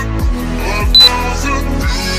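Background pop music with a steady beat and deep bass drum hits that drop in pitch. A short high beep sounds about a second in, louder than the music.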